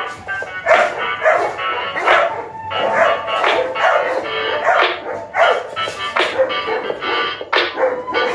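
Pitmonster dogs barking repeatedly from their kennel pens, about one or two barks a second, over background music.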